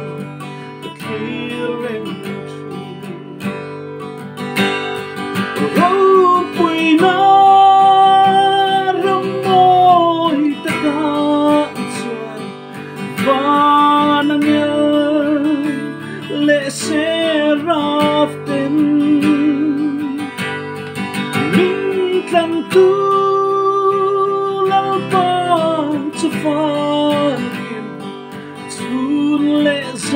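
A man singing solo while strumming chords on a steel-string acoustic guitar. Long held vocal notes that bend in pitch come in phrases over steady strumming.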